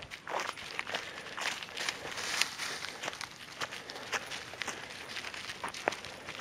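Footsteps of a walker and a leashed dingo on a bush track covered in dry leaf litter: irregular light crackles, several a second.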